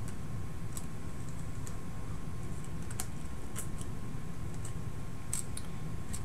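Light, irregular clicks and ticks of picture-hanging wire being folded over and handled against a metal hanger on the back of a wooden frame, about half a dozen, one sharper click about halfway through, over a steady low hum.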